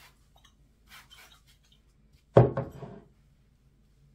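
An amber glass spray bottle set down on a hard surface with one sharp knock about two and a half seconds in, amid faint rustling of fingers moving through the fibres of a damp synthetic wig.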